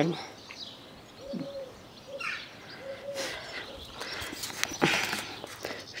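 A few short, low cooing calls from a bird, one dipping down in pitch, between soft rustling noises.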